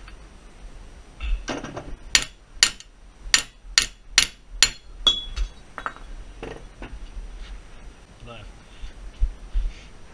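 Hammer blows on a Ford Fiesta's front hub and steering knuckle held in a bench vice, to drive the seized hub out: about six sharp, ringing metal strikes, roughly two a second, starting about two seconds in, then a few lighter knocks.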